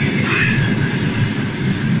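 Passenger train carriages rolling past along the platform as the train pulls out: a steady rumble of wheels on the rails.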